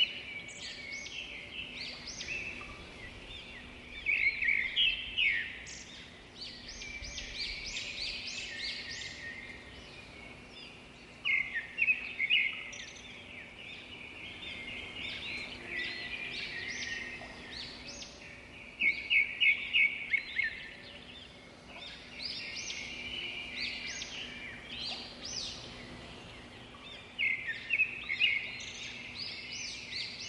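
Birds chirping and singing: continuous lighter twittering, broken about every seven or eight seconds by a loud burst of rapid chirps.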